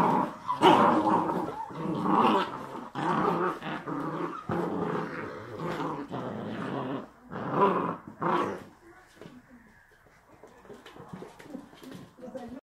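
Glen of Imaal Terrier puppies growling as they tug at and worry a stuffed toy, in near-continuous runs of growls that die away to faint scuffling about three-quarters of the way through.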